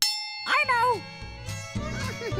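Cartoon sound effect: a sudden bright, bell-like ding that rings on, followed about half a second in by a short cartoon vocal sound that wavers up and down in pitch. Children's music with a bass line comes in after about a second.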